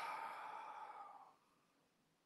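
A man's long sigh, a breath pushed out through the mouth that fades away after about a second, as he composes himself after a fit of laughing.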